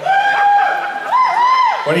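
A single high-pitched whoop of excitement from one person, held on one note for about a second, then rising twice before breaking off.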